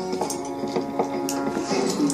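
A cartoon soundtrack playing from a television: steady held musical tones with soft taps scattered through them.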